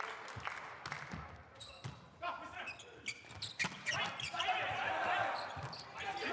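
A volleyball rally on an indoor court: the serve is struck, followed by a series of sharp hand-on-ball hits as the ball is passed, set and attacked. Players' shouted calls sound through the second half, in a large, mostly empty hall.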